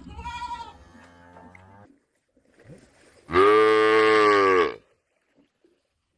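Cattle mooing: a quieter call at the start, then a much louder, longer moo lasting about a second and a half from about three seconds in.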